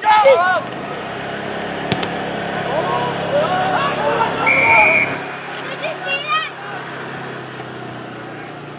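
Rugby players and spectators shouting, with one short referee's whistle blast about five seconds in.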